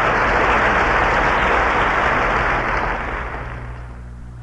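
Large stadium audience applauding, a dense wash of clapping that dies away over the last second. A steady low mains hum from the old reel-to-reel tape runs underneath.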